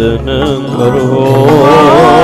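Sikh shabad kirtan music: a melodic line held with a wavering vibrato over steady sustained accompaniment, swelling about a second and a half in, with no words sung.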